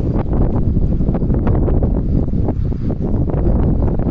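Wind buffeting the microphone: a loud, continuous low noise that swells and dips with the gusts.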